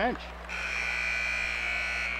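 Gymnasium horn sounding one steady, shrill blast of nearly two seconds, starting about half a second in, as play is stopped after the ball goes out of bounds.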